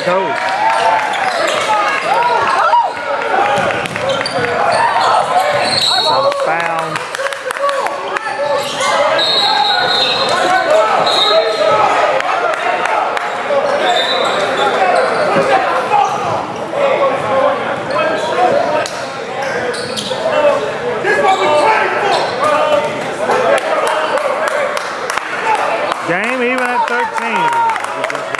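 Gym ambience: a basketball bouncing on the hardwood court amid many overlapping voices of players and spectators, echoing in a large hall, with a few brief high squeaks.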